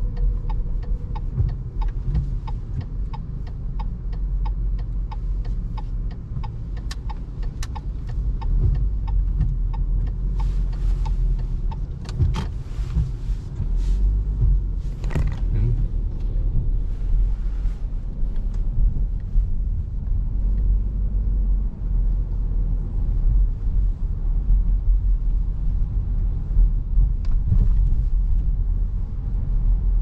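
A Subaru car's engine and road rumble heard inside the cabin while driving. For the first eight seconds or so, the turn-signal indicator ticks steadily, about two to three ticks a second. A few brief rustling noises come near the middle.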